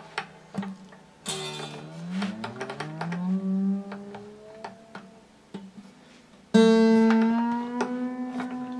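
The new high E string of an acoustic guitar plucked while it is being tightened with a string winder: its note rises steadily in pitch as it rings, the string being brought up toward tune. A second, louder pluck comes near the end and rings on, still creeping slightly sharper, with a few light clicks between the two plucks.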